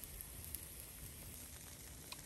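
Faint, steady sizzle of pancake batter cooking in a thin film of olive oil in a frying pan, with one small click about half a second in.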